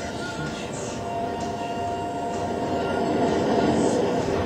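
SpaceX Grasshopper test rocket's engine firing as it hovers, a steady rushing noise that grows louder toward the end, played back through a lecture hall's loudspeakers.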